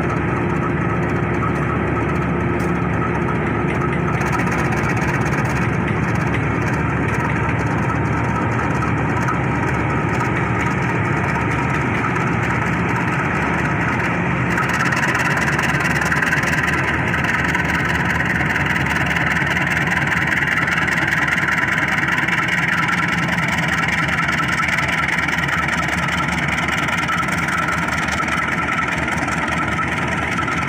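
Diesel-electric locomotive engine running steadily as the locomotive passes slowly close by, hauling passenger coaches at reduced speed over newly laid track. About halfway through, a steady rushing noise joins the engine.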